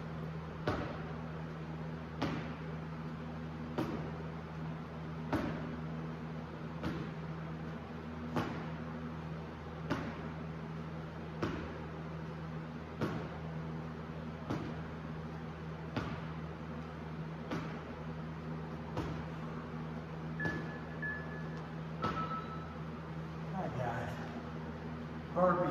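Rhythmic thuds about every second and a half from a person's sneakers landing on artificial turf, one per rep of a plank-based bodyweight exercise, over a steady low hum. Two short beeps sound near the end.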